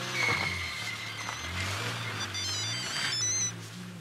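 Mobile phone ringtone: an electronic melody of held notes over a low bass line, with quick high beeping notes in its second half.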